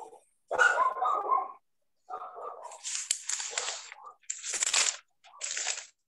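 A dog barking in several bursts heard over a video-call line, each burst cut off sharply into silence.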